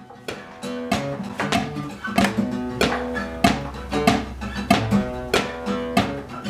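Acoustic guitar strummed in a steady rhythm, about three strokes a second.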